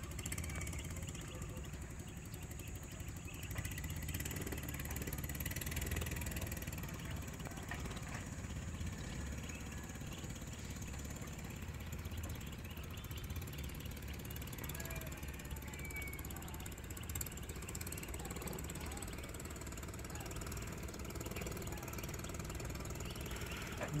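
Steady outdoor ambience: a continuous low rumble with a faint, thin high whine over it and a few faint brief chirps.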